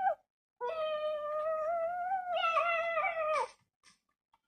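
A woman's high-pitched excited squeal of 'yeah', held for about three seconds with a slightly wavering pitch that drops at the end.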